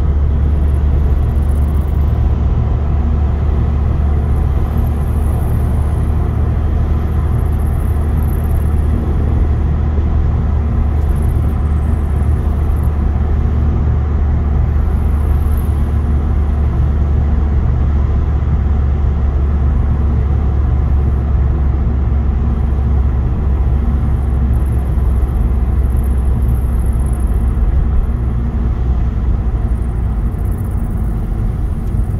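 A car driving at steady speed on a country road, heard from inside the cabin: an even, low rumble of engine and tyre noise.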